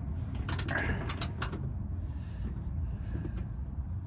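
Ratchet wrench clicking in a quick run of sharp clicks about half a second to a second and a half in, with a few more near the end, as a bolt on a hood strut's upper mount is worked. A steady low rumble runs underneath.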